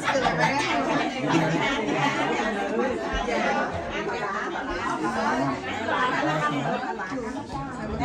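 Several people talking at once: overlapping conversational chatter, with no single voice standing out.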